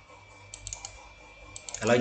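A quick run of sharp computer mouse clicks about half a second in, as the desktop right-click menu is opened. A voice starts speaking near the end.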